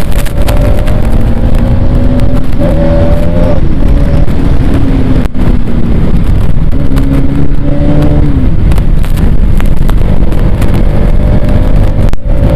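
Bajaj Pulsar NS200 single-cylinder motorcycle engine running at road speed, its note sinking and rising several times with the throttle, under heavy wind rumble on the helmet-camera microphone.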